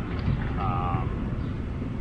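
Steady low outdoor background rumble, with a short voiced 'um' from a man's voice about half a second in.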